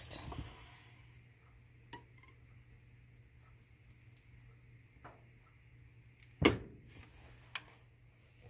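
Quiet handling of a wire soap cutter and a cold-process soap loaf: a few light clicks and one sharp knock about six and a half seconds in, the loudest sound, over a faint steady low hum.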